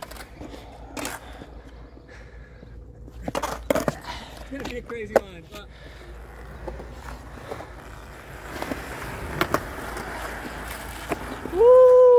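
Skateboard wheels rolling on concrete, with several sharp clacks of the board and trucks hitting the ground, a cluster of them about three to four seconds in. Near the end comes a loud whooping shout.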